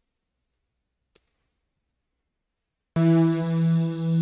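A faint click, then a sustained synthesizer chord that starts abruptly about three seconds in and is held steady. It is playback of the composition's music track from the video editor's timeline.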